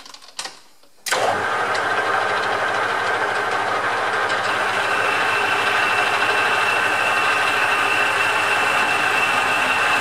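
Metal lathe switched on after a couple of clicks: about a second in the motor and gearing start up and run steadily, spinning the four-jaw chuck, with a high whine joining about halfway.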